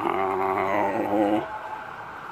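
A man's long, low, drawn-out "nahhh", held steady and cutting off about one and a half seconds in, followed by a steady street hum.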